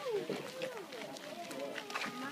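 Several people's voices talking over one another, indistinct, with a few light taps near the end.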